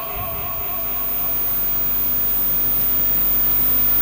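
Steady background room noise through the microphone, a low rumble with a hiss over it, slowly growing louder.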